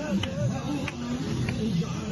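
Marching crowd's voices mixed with music or chanting, with a sharp beat struck about every two-thirds of a second.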